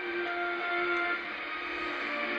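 Music from a shortwave broadcast coming through a communications receiver's speaker. It sounds thin and narrow-band, over a steady background hiss, with a few held notes.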